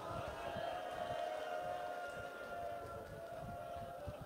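Faint weeping of mourners: one long, slightly wavering wailing cry for about three and a half seconds, over soft, uneven sobbing breaths close to the microphone.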